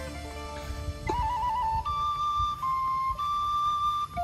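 Background music: a soft chordal passage fades out and, about a second in, a solo flute melody enters, one clear line with quick trilled ornaments.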